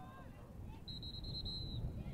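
A referee's whistle is blown once, a high shrill tone with a slight trill lasting about a second, signalling the start of a lacrosse draw. A low rumble of field noise runs underneath.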